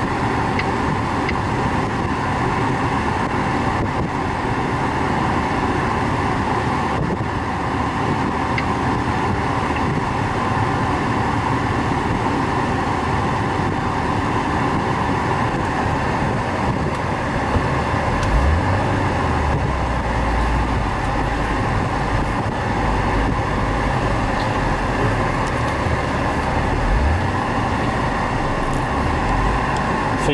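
Steady in-cabin noise of a third-generation Acura TL. From about 18 seconds in, a low rumble grows as the car gets under way on the road.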